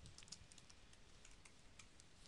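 Faint computer keyboard typing: a quick run of soft key clicks as a word is typed.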